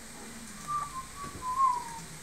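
A person whistling a few short notes, the last one the loudest and sliding down in pitch.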